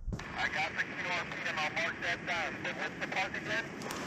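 (tr)uSDX transceiver's speaker receiving 40 m single-sideband: band-noise hiss with a weak, hard-to-copy voice of a distant station buried in it. The hiss comes on abruptly as the radio switches from transmit back to receive.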